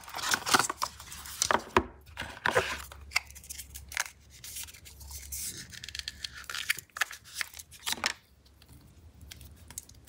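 Hands handling a cardboard phone box and its packaging: irregular rubbing, sliding and rustling of cardboard and paper, with a few sharp taps and knocks. It goes quieter shortly before the end.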